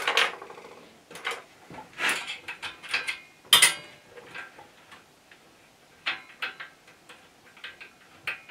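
Small metal clicks and taps of a hand tool working the screw that holds the indexing collar inside a lathe headstock as it is undone, in irregular clusters with one sharper clack about three and a half seconds in.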